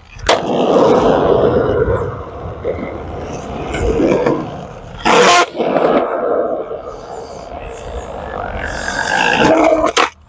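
Skateboard wheels rolling on a concrete skatepark. There is a sharp clack of the board hitting the concrete just after the start, and a louder clack about five seconds in during a frontside tail stall attempt on the bank, with rolling before and after.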